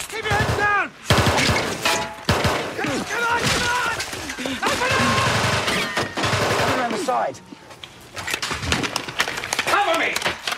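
Battlefield gunfire: a fusillade of rifle shots and machine-gun bursts, dense and loud, with men shouting over it. The firing thins briefly about seven and a half seconds in before picking up again.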